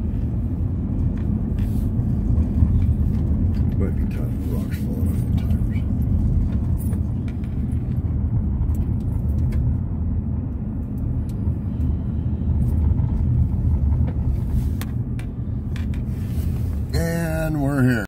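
Steady low rumble of a car's engine and tyres on pavement, heard from inside the cabin while driving. A short voice sound comes in near the end.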